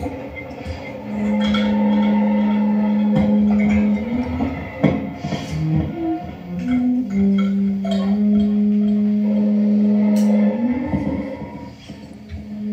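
Free-improvised experimental music for violin, saxophone, kalimba and electronics: two long, steady low held tones, each ending in an upward slide in pitch, with short higher notes and scattered clicks between them.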